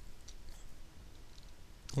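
Quiet room noise with a few faint clicks of a computer mouse. A man's voice starts right at the end.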